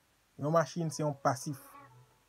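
A man's voice rapidly repeating the same short word over and over, starting after a brief pause.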